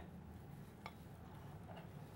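Nearly silent room tone with one faint click a little under a second in, a utensil lightly touching a saucepan.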